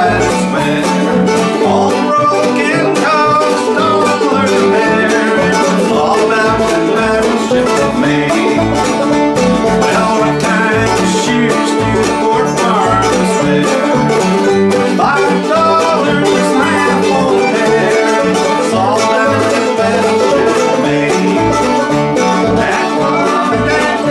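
Acoustic old-time string band playing: fiddle, banjo and acoustic guitar over an upright bass keeping a steady beat of about two notes a second.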